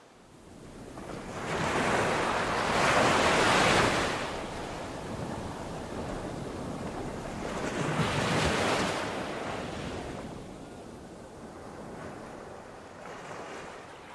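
A surf-like rushing noise that swells and fades twice, peaking about three seconds in and again near nine seconds, like waves washing in.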